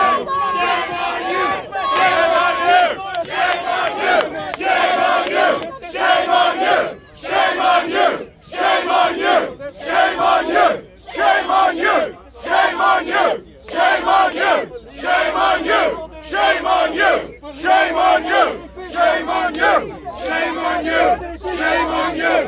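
A crowd of protesters shouting a short chant over and over in unison, with a phrase about once a second.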